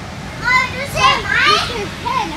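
A young child squealing and calling out in play, high-pitched calls that swoop up and down in pitch, starting about half a second in.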